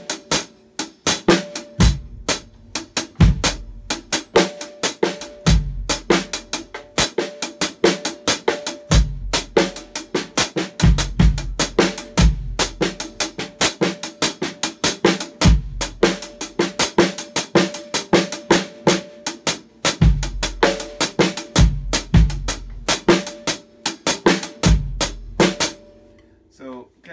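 Drum kit playing a slow timba marcha abajo groove: a steady cascara pattern of quick stick strokes, with kick drum and snare accents dropped in freely at uneven spacing.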